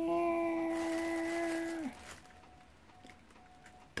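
A man's voice holding one long, steady note for about two seconds, sliding up briefly at the start. It is a hummed or sung sound rather than words.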